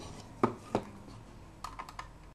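Light clicks and taps of a small screwdriver and fingers on the thin aluminium case of a video receiver while its screws are taken out: two sharp clicks about a third of a second apart, then a quick run of smaller clicks near the end.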